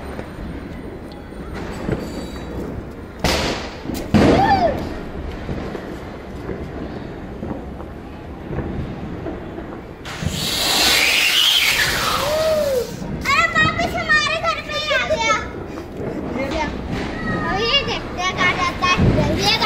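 Diwali firecrackers going off: two sharp bangs about three and four seconds in, then a firework hissing for about two seconds around ten seconds in, followed by children shouting excitedly.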